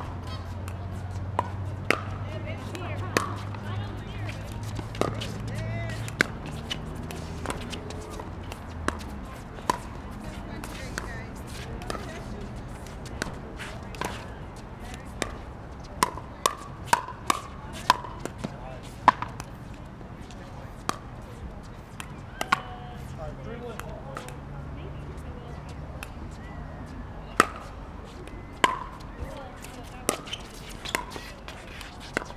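Pickleball rally: a string of sharp, ringing pops as the hard plastic ball is struck by paddles and bounces off the court, coming at irregular intervals and quickest in a run about sixteen to nineteen seconds in.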